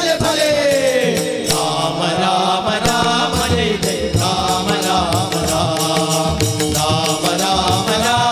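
Group of male voices singing a Hindu devotional bhajan in chant style, accompanied by tabla and a harmonium. A steady rhythmic beat runs under the melody throughout.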